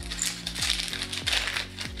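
Thin clear plastic zip bag crinkling and rustling in the hands as it is opened and a printed card is slid out, in many small crackly ticks, over steady background music.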